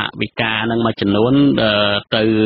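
Only speech: a man's voice reading news narration in Khmer, with short pauses between phrases.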